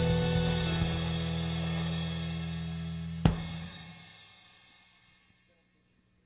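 A rock band's closing chord on electric guitar and organ, with cymbal wash, ringing out and dying away. One last sharp drum-and-cymbal hit comes about three seconds in, and everything fades to near silence by about five seconds in.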